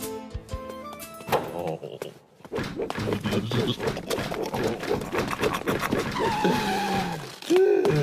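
Cartoon background score: a run of short plucked notes, then a busier, faster passage full of quick ticks. A brief falling vocal exclamation comes near the end.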